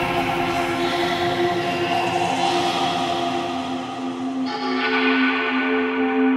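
Progressive psytrance intro: several sustained, bell-like synth tones held together, with no drum beat.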